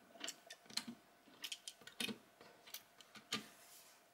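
Small die-cast metal toy cars being set down and nudged into place on a wooden tabletop: a scattered series of light clicks and taps, roughly half a second apart.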